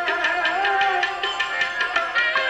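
Live devotional bhajan music: a sustained melody over steady held tones, with a quick, even percussion beat of tabla strokes, about five or six a second.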